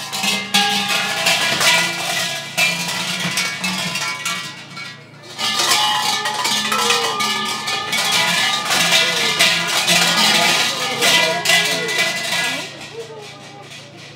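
Large Shinto shrine bells (suzu) shaken by their rope pulls, a loud metallic jangling rattle with ringing tones, in two long bouts, the second starting about five seconds in. This is the bell rung by worshippers to call the deity before praying.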